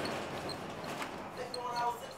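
Old streetcar rolling slowly along its rails, a steady running noise with faint light ticks, and a brief voice near the end.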